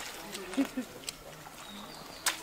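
Faint, brief voices of people talking in the background, a few short syllables about half a second in, over quiet outdoor ambience.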